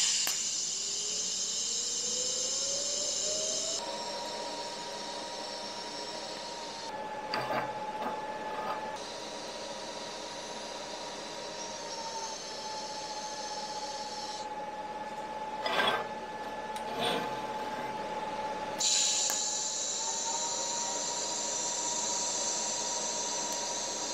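TIG welding arc tacking steel sprockets: a steady whine with a high hiss that drops out and returns, shifting in pitch a few times. A few sharp clicks come in between.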